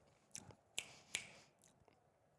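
A near-silent pause holding four faint, short clicks within the first second or so.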